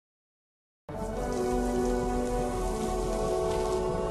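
Silence, then about a second in a cartoon soundtrack starts abruptly: a steady hiss of rain with soft, sustained music notes held underneath.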